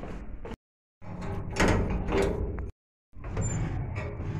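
A sheet-metal door being handled, with rattling and clattering of the metal and the loudest bangs in the middle. The sound is chopped by two brief dead-silent gaps.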